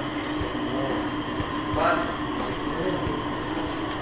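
A steady machine hum of indoor room noise. A man says one short word about two seconds in.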